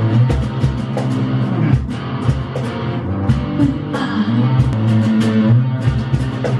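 Instrumental break of a pop-rock sea shanty: electric guitar playing over a backing band with a steady drum beat.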